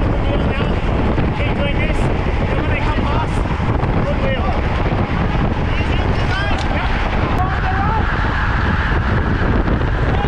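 Loud, steady wind rush on a racing bicycle's on-bike camera microphone at race speed, with scraps of voices coming through it.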